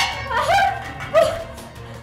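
A woman crying out in short, high, wailing sobs over background music, the loudest a little after a second in.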